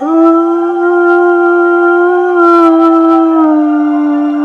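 A man's voice holding one long sung note over a quiet backing track, the pitch dipping slightly about three and a half seconds in.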